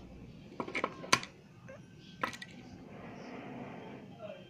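A few short clicks and knocks as a small die-cast toy truck is handled and turned over in the hand, bunched about a second in, with the sharpest click the loudest, and one more a little after two seconds.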